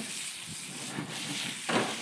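Food sizzling in a pan over a wood fire: a steady high frying hiss, with a click about a second in and a louder burst of sizzle shortly before the end.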